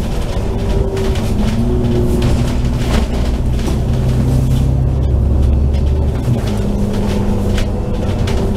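Bus diesel engine under way, a loud low rumble whose pitch climbs and then drops back at gear changes, about two seconds in and again near the end, with light rattling from the bus body.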